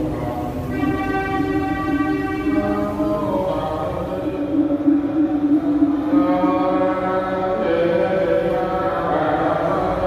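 Slow Buddhist chanting: long held sung notes that shift in pitch every second or two, running on without a break.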